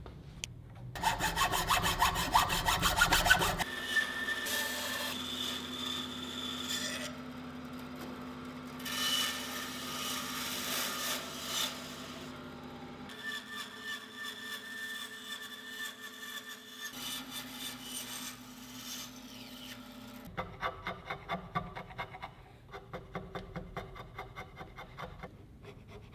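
Benchtop bandsaw running with a steady motor hum while cutting a laminated wooden bow riser block, the cutting noise rising and falling over much of the span. It is preceded by a couple of seconds of fast rhythmic strokes on the wood, and followed near the end by short repeated strokes of a hand chisel paring the wood.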